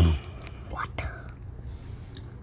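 Soft whispering from children at the table, opening with a brief low hum, and a couple of faint clicks about a second in.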